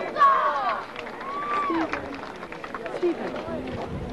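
Indistinct voices of people talking, with short rising and falling phrases near the start and again about a second in, over open-air background murmur.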